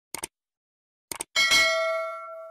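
Two quick click sound effects, another short run of clicks about a second later, then a bright bell-like ding that rings out and fades: a subscribe-button click and notification-bell chime.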